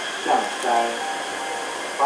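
Taipei Metro C381 train pulling into the platform and braking to a stop, with a steady high whine over a running hiss.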